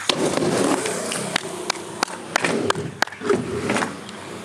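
Skateboard wheels rolling on a concrete bank, with a run of sharp clacks and knocks from the board, among them the pop and landing of an ollie over the gap.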